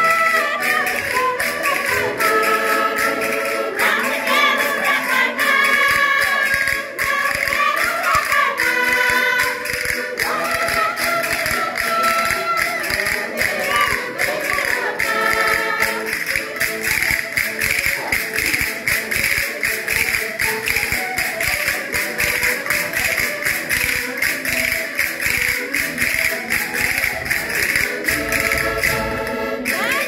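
A woman sings a folk song into a microphone while other voices join in, over a steady tapping or clapping beat. About halfway through the singing thickens and a second woman takes over the lead.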